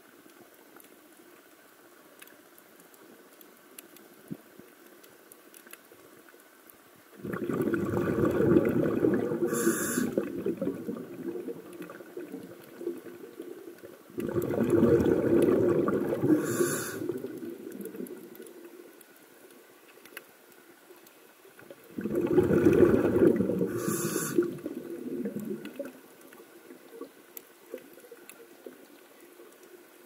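A scuba diver's exhaled bubbles bubbling out of the regulator, heard underwater, three times, each burst lasting about three to four seconds, with quiet pauses between breaths.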